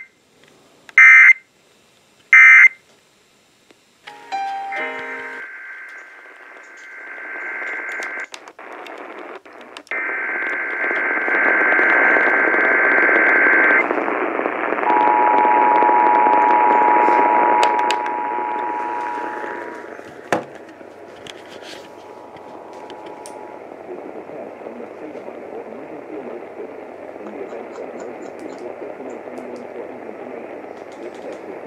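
Emergency Alert System test heard on a portable radio: three short end-of-message data bursts about a second apart, then, on AM through static, the screeching header data tones of the next test and the two-tone EAS attention signal held for about eight seconds. Steady AM static hiss follows.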